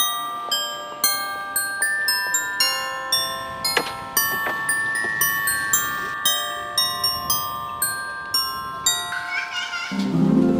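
Background music: a melody of struck, bell-like notes, about three a second, each ringing out briefly, with a quicker run of notes near the end.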